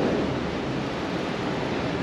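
Steady wind and water noise: wind on the microphone and choppy water around a small bay boat's hull.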